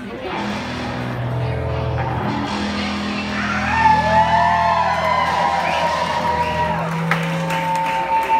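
Live rock band on stage: electric guitar and bass holding long sustained notes, with guitar pitches bending up and down and one high note held from about halfway in, as the band starts up.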